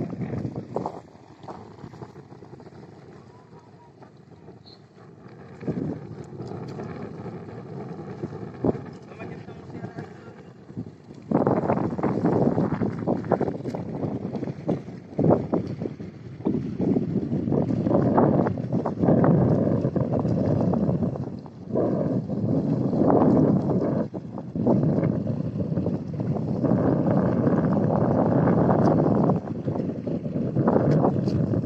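Wind buffeting a phone microphone, fairly quiet at first, then gusting loud and rough from about a third of the way in, rising and falling in gusts.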